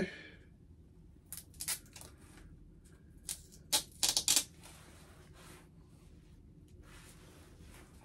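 Hands unpacking a mailed comic-book package: scattered sharp crinkles and snaps of plastic and cardboard, with a quick cluster of them around four seconds in, then fainter rustling near the end.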